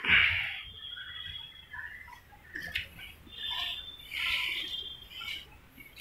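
Bricks being laid in wet cement mortar: faint scrapes and knocks of brick and mortar, with a short loud scrape at the start and one sharp tap near the middle.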